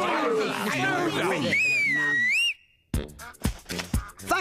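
Cartoon soundtrack: voices exclaiming, then a whistle-like tone that dips and rises for about a second. After a short gap, a hip-hop style beat starts about three seconds in.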